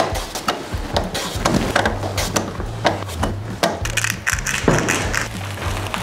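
Kohlrabi being sliced on a steel mandoline slicer: quick, repeated rasping strokes of the vegetable across the blade.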